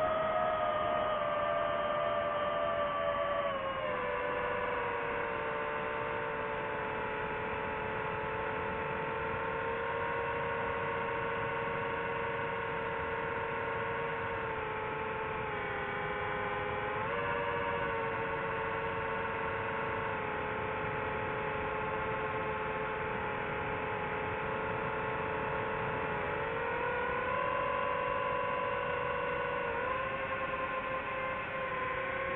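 DJI FPV drone's motors and propellers whining in flight: a steady hum of several pitches that drops about four seconds in, dips and recovers around halfway, and rises again near the end.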